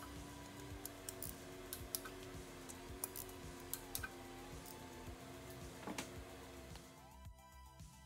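Soft background music with long held tones, over irregular light clicks from a ratcheting torque wrench tightening the transmission front cover bolts; the clicks stop near the end.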